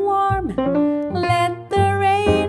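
Live jazz trio: a female voice sings a sliding, held vocal line over piano and plucked double bass.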